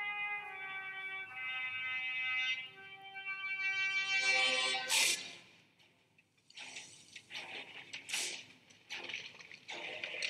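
Film soundtrack music: a long held note rich in overtones shifts pitch a couple of times over the first few seconds. It fades, and sharp cracks follow at about five and eight seconds in, among scattered noise.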